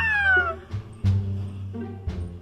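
Background music with a single cat meow near the start, a short cry that rises and then falls in pitch.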